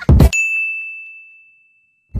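Sound-effect hit: a short, loud thump followed at once by a single high bell-like ding that rings on one pitch and fades away over about a second and a half.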